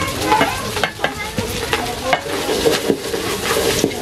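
Wooden spatula stirring khichuri (rice and lentils) in an aluminium pot, scraping and knocking against the metal again and again, with the contents sizzling in the hot pot.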